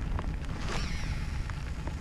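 Uneven low rumble of wind on the microphone, with a few scattered light ticks of rain.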